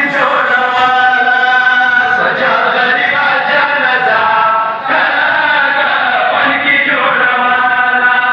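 Men's voices chanting a Shia mourning lament (noha) in long, held phrases, with a short break about five seconds in.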